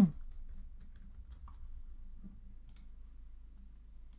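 A few faint computer keyboard key taps and mouse clicks over a low, steady hum.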